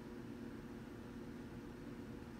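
Faint, steady low hum with a light hiss: room tone, with no distinct event.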